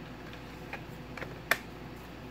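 Knife and hard Kydex sheath being handled: a couple of faint ticks, then one sharp click about one and a half seconds in.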